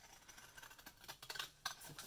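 Faint rustling of a sheet of paper being handled and moved over other paper, with a few light clicks and ticks through the second half.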